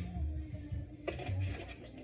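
Cooking oil being poured from a plastic bottle into a frying pan on the stove. There is a brief soft rush of the oil hitting the pan about a second in, over a faint low hum.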